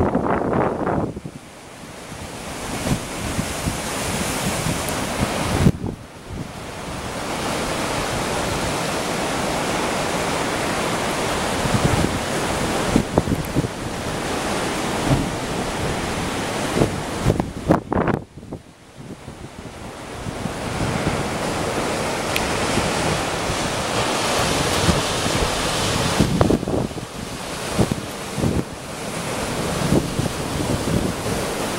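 Heavy storm surf breaking and washing over rocks, a continuous rushing roar of water with strong wind buffeting the microphone. The sound drops away briefly twice, about a fifth of the way in and again about two-thirds through.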